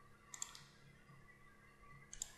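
A few faint, quick clicks from a computer mouse or keyboard about a third of a second in, over near silence.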